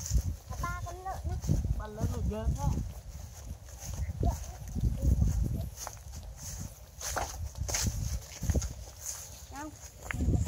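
Wind buffeting the microphone in gusts, with footsteps and rustling through grass, and a few short, indistinct voice-like calls early on and again near the end.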